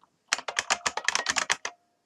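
Typing on a computer keyboard: a quick run of about a dozen keystrokes in a second and a half as a word is typed in.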